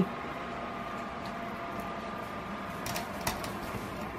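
A steady hum of room noise with a few steady tones in it, broken by a couple of short clicks about three seconds in.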